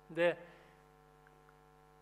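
A man's short vocal syllable about a quarter second in, then a quiet, steady electrical hum.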